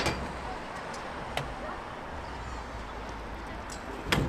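Freestyle scooter riding at low level over a steady low rumble, with a single sharp clack about a second and a half in.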